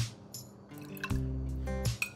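Apple cider vinegar trickling from a small glass jug into a metal spoon and dripping into a glass bowl of liquid, with a few drips about a second in. Background music with sustained bass notes is louder.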